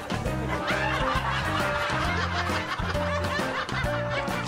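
Light comic background music with a laugh track of chuckles and snickers over it.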